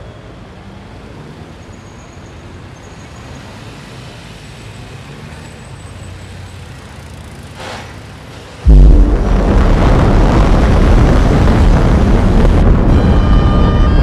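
Low street ambience with traffic, then about nine seconds in a sudden loud boom that runs on as a heavy rushing noise for about four seconds: a time-travel sound effect for the bollard being struck to reset the year. Music comes in near the end.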